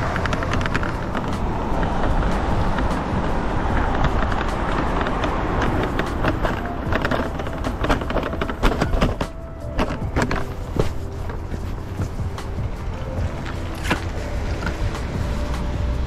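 Scooter rolling over a wet concrete sidewalk: a steady rumble of wheels and wind on the bag-mounted camera, broken by many sharp rattling clicks.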